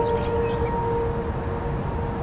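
A sustained ambient music chord fading out over a steady low outdoor rumble, with a few short high chirps near the start.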